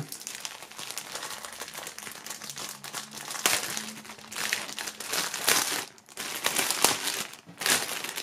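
Clear plastic film wrapped around a folded T-shirt crinkling and rustling as hands pull it open and work the shirt out, in irregular bursts that grow louder in the second half.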